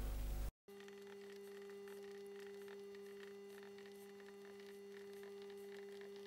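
Faint, steady electrical mains-type hum, two even tones with light hiss, starting after a brief cut to silence about half a second in.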